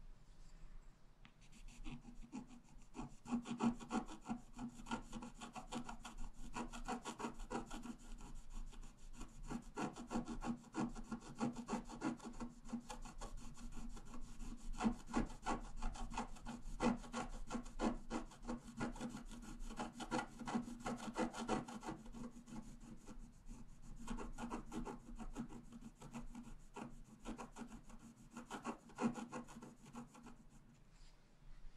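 A pointed wooden stylus scratching the black coating off a scratch-art page in rapid short strokes. It starts about a second in and keeps going, with brief pauses.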